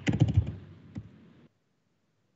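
Keystrokes on a computer keyboard: a quick run of key taps, then a single tap about a second in, as a misspelt search entry is typed and deleted. The sound cuts off suddenly about a second and a half in.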